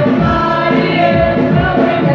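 A group of singers singing together live through a PA, over a keyboard, with a steady low beat underneath.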